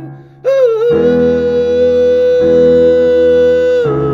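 A man's voice holds one long note without words. It scoops up into the note about half a second in and holds it steadily until just before the end, over sustained electric keyboard chords that are struck again midway.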